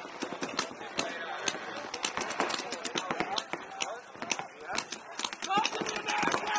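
Paintball markers firing in scattered, irregular pops, mixed with indistinct voices calling out across the field.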